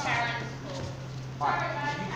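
Two wordless, high-pitched vocal calls: the first falls in pitch at the start, the second comes about a second and a half in. A steady low hum runs under them.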